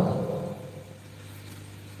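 A short pause in a man's amplified talk. His last word fades out in the first half second, leaving quiet room tone with a steady low hum.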